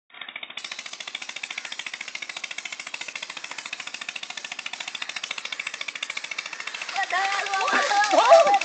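A fast, even rattle of rapid pulses that holds steady, with voices breaking in about seven seconds in.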